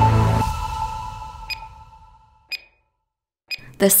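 Background music fading out, then three short, high beeps one second apart from the workout's interval timer, counting down the end of the exercise set.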